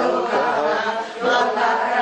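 Devotional chanting of a Sanskrit hymn by voices, steady and continuous, with a short break for breath a little past halfway.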